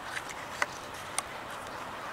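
Cat eating dry treats off concrete: three short, sharp crunches over a steady outdoor hiss.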